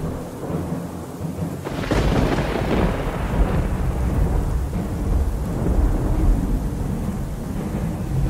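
Thunder with rain: a sudden thunderclap about two seconds in rolls into a long, low rumble.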